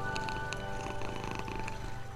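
Domestic cat purring steadily, mixed with calm background music of long held notes.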